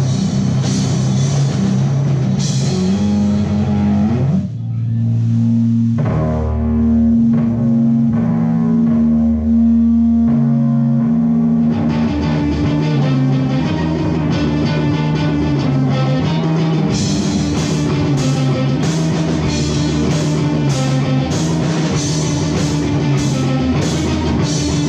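A rock band playing electric guitar, bass guitar and drum kit. About four seconds in, the drums drop out and the guitars hold long notes over the bass for several seconds. The full band comes back in about twelve seconds in, with the cymbals ringing out more sharply near the end.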